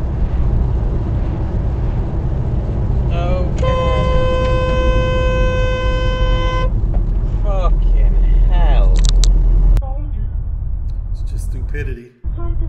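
A car's steady road and engine rumble, with one long car horn blast of about three seconds, sounded as an oncoming car overtakes into the car's lane. Near the end the rumble drops suddenly to a quieter road noise.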